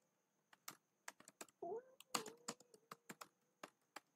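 Computer keyboard being typed on: faint, quick, irregular key clicks as a word is typed out.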